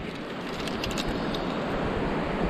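Steady rushing wind noise on the microphone, with a few faint clicks about half a second to a second in.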